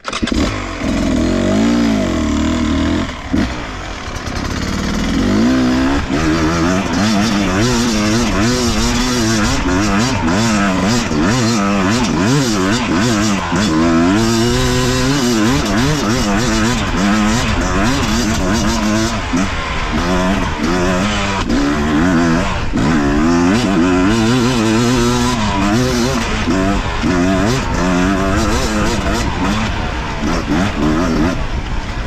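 Beta RR 250 Racing's single-cylinder two-stroke engine, fitted with an S3 high-compression head, under way on a dirt trail: its revs climb and drop again and again as the throttle is opened and closed, with a brief easing off about three to four seconds in.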